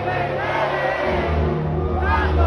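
Live pop music in a large arena, with the crowd singing along, picked up by a phone's microphone. A deep bass comes in about a second in.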